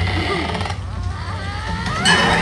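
Animated ride-film soundtrack played through a theater sound system: a loud, steady deep rumble with cartoon voices gliding up and down in pitch over it.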